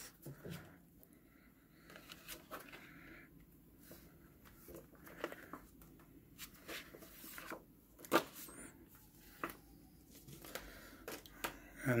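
Soft paper and card rustling and sliding as a card slipcover and paper obi strip are worked off a photobook, with scattered light taps and one sharper click about eight seconds in.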